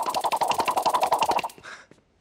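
A fast, even rattling trill of sharp clicks, about twenty a second, which stops abruptly about a second and a half in.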